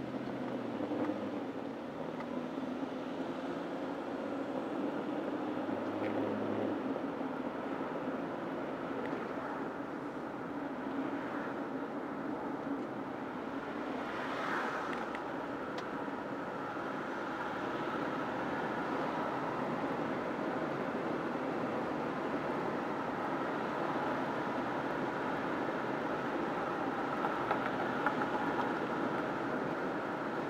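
Car driving along a city street, heard from inside the cabin: steady engine and tyre noise, with a brief swell of noise about halfway through.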